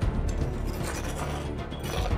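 Background music over mechanical scraping and rattling as a scoop scrapes ground rock powder out of a metal grinding drum.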